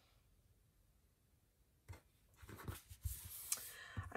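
Loose paper planner pages rustling and sliding on a tabletop as they are moved by hand. The rustle starts about halfway through, just after a single soft click.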